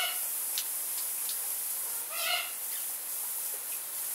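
A parrot gives one short call about two seconds in, over the steady hiss of misting nozzles spraying water.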